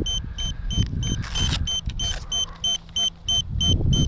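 An electronic beeper sounding short, high beeps, about three a second, over a low rumble of wind on the microphone, with a brief rustle about a second and a half in.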